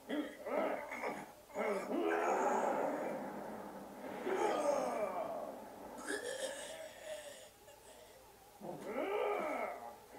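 Voices in an anime fight scene groaning and straining in drawn-out cries whose pitch rises and falls, several in a row with short gaps.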